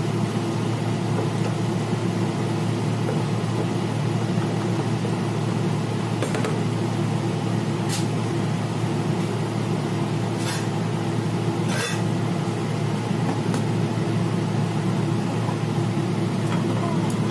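Steady low mechanical hum of kitchen equipment running, with a faint steady tone in it. Four short, sharp ticks come through it in the middle stretch.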